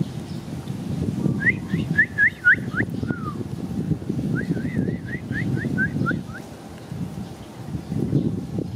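A bird calling in two quick runs of short whistled chirps, about four or five notes a second, with a brief falling note between the runs. A steady low rumble sits under them.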